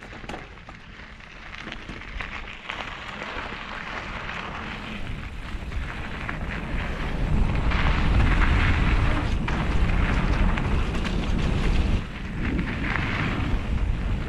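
Wind rushing over an action camera's microphone on a mountain bike descending dry dirt singletrack, mixed with the tyres rolling and rattling over the loose surface. It grows louder as speed builds, with a brief drop about twelve seconds in.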